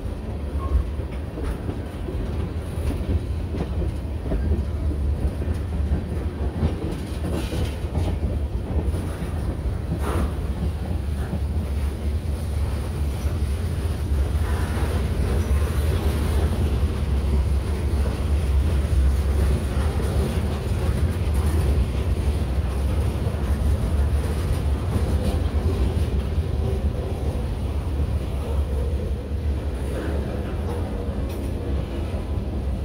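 Freight train cars (tank cars, boxcars and covered hoppers) rolling past close by: a steady, heavy rumble of steel wheels on rail with occasional clacks over the rail joints.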